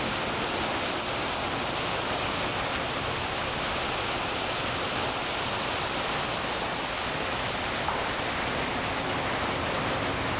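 Steady rushing noise of a ship's wake churning white water behind the stern.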